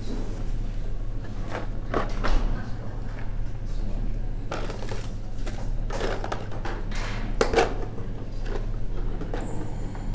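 Small objects being moved and handled on a fly-tying table during a search for a bottle of head cement, a few light knocks and shuffles over a steady low hum, with faint voices in the room.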